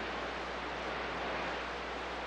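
Steady hiss of static from a CB radio receiver between transmissions, with a low steady hum underneath.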